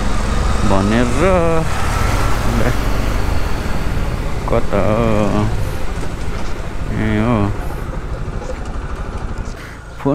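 Motorcycle running along a street at riding speed, a steady low engine and wind rumble, easing off over the last couple of seconds.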